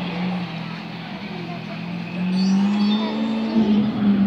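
Sports car engine running at low speed as the car drives slowly past, a steady low note that grows slightly louder and higher from about two seconds in.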